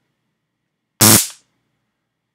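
Vipertek rechargeable stun gun firing, its electric arc crackling across the electrodes in one short, very loud burst about a second in.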